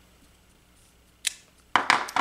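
Quiet handling, then a single sharp click about a second in and a short clatter near the end: a clear stamp and the Stamparatus stamping tool being handled and lifted off the card after stamping.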